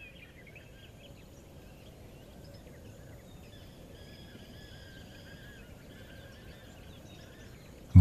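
Faint bird calls, thin and high, chirping on and off over a steady low background noise of open country.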